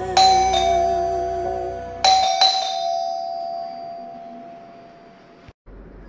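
Doorbell chime rung twice, about two seconds apart, each time a two-note ding-dong whose tones ring on and fade away. Soft background music ends about two seconds in.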